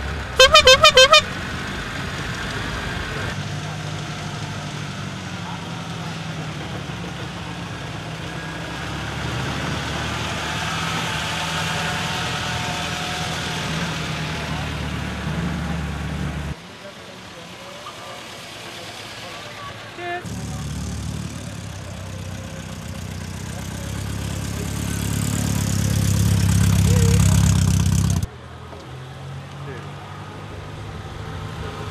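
A 1934 Stoever cabriolet's horn giving one loud, wavering toot about a second long near the start. After that, old car engines run as cars drive off one after another, one growing louder as it passes close near the end.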